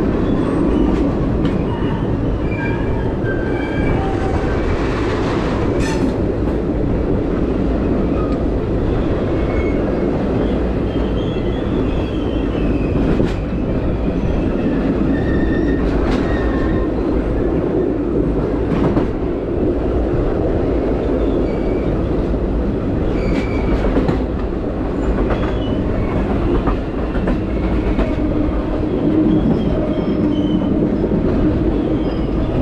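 A passenger train's wheels running over the rails, heard from the open rear platform of the last car: a steady loud rumble with scattered sharp clicks from track joints and switches and faint high wheel squeals.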